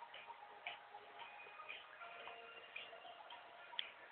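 Faint, regular ticking, about two ticks a second, over faint held tones.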